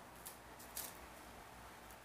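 Metal spoon stirring a gritty, damp mix of instant coffee granules and brown sugar in a bowl, giving two short, faint scrapes, the stronger one just under a second in.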